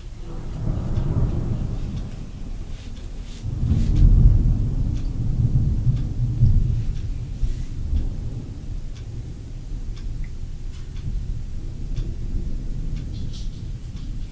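Thunder rolling in a deep, drawn-out rumble in two swells, the second and louder one about four seconds in, then slowly fading.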